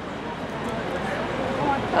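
Faint background voices over steady street noise, with no nearby voice or sudden sound.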